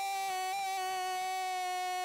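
A single synthesized tone held at one unwavering pitch and loudness, rich in overtones, with no room noise behind it. It cuts off abruptly at the end.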